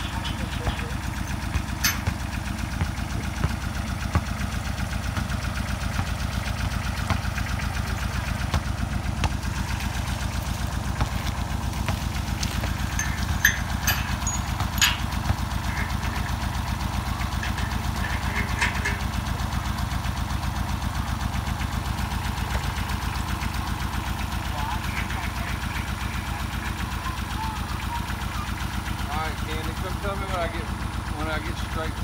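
A tractor engine idling steadily throughout, with a few sharp metallic clinks scattered through the middle as a nut is worked onto an anchor bolt at the foot of a steel column.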